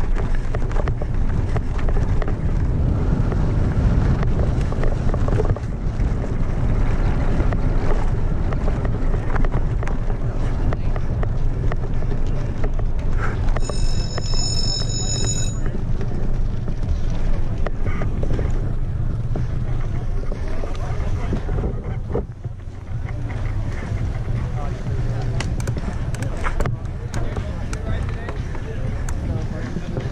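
Wind rushing over the camera microphone and a mountain bike rattling on a dirt trail, a steady rough noise. About halfway through, a high electronic beep sounds for about two seconds.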